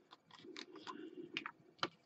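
Faint clicks and taps of small workbench items being handled on a cutting mat as a superglue bottle is picked up, with one sharper click near the end.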